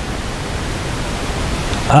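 A steady, even hiss of background noise in a pause between the speaker's phrases.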